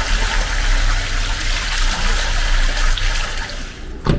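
Mineral spring water running steadily from a pipe spout.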